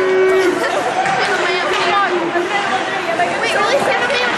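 Indistinct chatter of spectators at an ice hockey game, several voices talking over one another.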